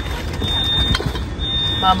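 Steady low rumble of street traffic, with a few faint handling knocks from groceries in a plastic shopping bag about a second in.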